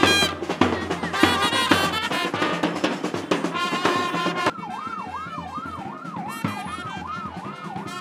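Street brass band of trumpets over bass and snare drums playing a lively tune. About halfway through it gives way to a vehicle siren wailing up and down about two and a half times a second, with the band faint behind it.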